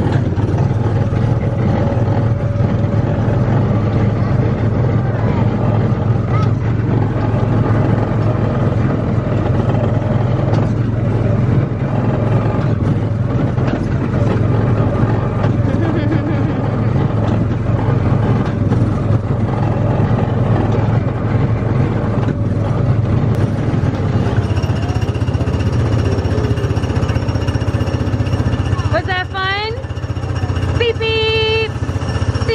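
Small gasoline engine of a Tomorrowland Speedway ride car running steadily under load as the car drives the track: a loud, even low drone with light rattles. The engine note changes in the last few seconds.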